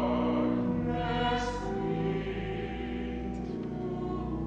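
A small choir of a few voices singing sustained notes, the chords changing slowly, over a low steady bass note.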